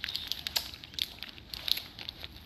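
Plastic candy wrappers crinkling in hands, with scattered short crackles and clicks as sticky candy is eaten out of them.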